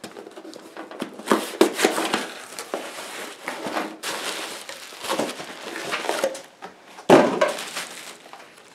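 Cardboard box flaps and pink bubble wrap being handled as a wrapped replacement part is lifted out: steady crinkling and rustling with many small crackles and scrapes, and a louder rustle about seven seconds in.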